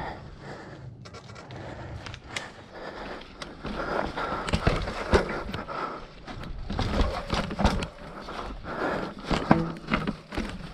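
Mountain bike rolling down a rocky dirt trail: tyres running over rock and dirt, with irregular knocks and rattles from the bike as it drops over the rocks.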